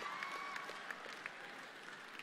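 Audience applause and crowd noise in a large hall, scattered claps thinning out and dying away.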